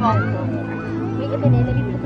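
Music with sustained low notes, the notes changing about one and a half seconds in, over people's voices and chatter. A short high gliding voice-like sound comes right at the start.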